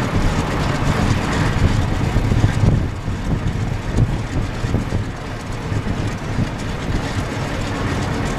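The Pratt & Whitney R-2800 eighteen-cylinder radial engine of an F4U-4 Corsair running at low power while the plane taxis: a loud, uneven, rumbling engine note with the propeller turning.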